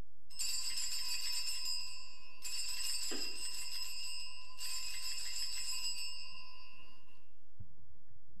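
Altar bells rung three times at the elevation of the chalice during the consecration. Each ring is bright and high, and the last fades out about seven seconds in.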